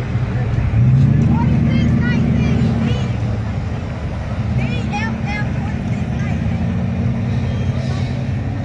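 Nearby vehicle engines running in stopped traffic, a steady low hum that swells for a couple of seconds about a second in, as a vehicle pulls forward. Faint voices are heard behind it.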